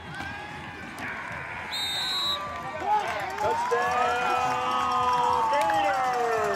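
Crowd and players cheering and shouting after a touchdown, many voices overlapping and growing louder about a second in, with one long rising-then-falling yell. A brief high whistle sounds just before two seconds in.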